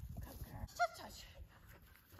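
A dog gives one short, high yip a little under a second in, over a low rumble.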